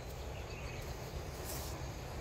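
Outdoor garden ambience: a steady low rumble, with one short high chirp about one and a half seconds in.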